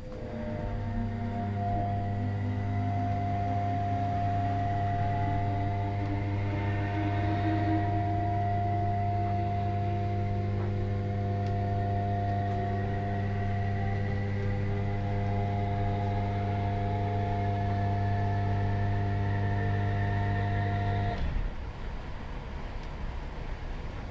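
Class 317 electric train's equipment giving a steady whine made of several fixed tones, with a few fainter tones rising slowly through the first half. It starts within the first second and cuts off abruptly shortly before the end.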